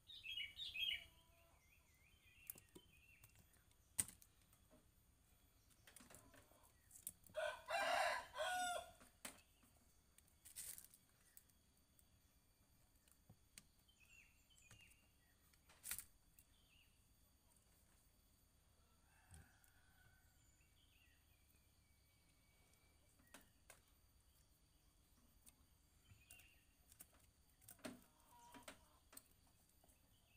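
Mostly quiet, with a rooster crowing once about seven seconds in, lasting about two seconds. There are faint bird chirps now and then and a few sharp single clicks.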